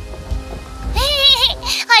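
Cartoon soundtrack: a low, noisy rumble under faint steady background tones. Just after a second in comes a brief high-pitched voice sound with bending pitch, and the low rumble stops abruptly near the end.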